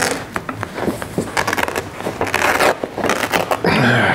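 Upholstery fabric being pulled and peeled back by hand off a chair seat, a rough ripping and scraping with many small crackles as it tears free of staples that are really hard to take out.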